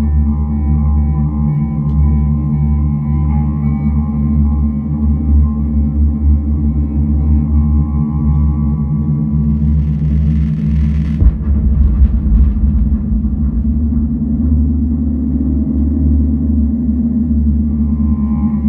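Ambient electronic music: sustained synthesizer drones over a deep bass pad, with a bowed cello. About ten seconds in a hissing noise swells up and cuts into a sudden deep bass hit, the loudest moment, after which the drones carry on.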